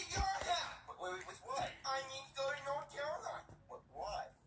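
A person's voice talking in character, continuous speech with a brief low knock right at the start.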